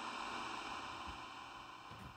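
Faint static hiss from the Ghost Tube spirit box app, fading away gradually.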